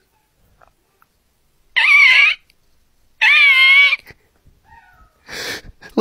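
Two high-pitched, wavering cries, the first about two seconds in and the second, slightly longer, about a second later, each lasting well under a second.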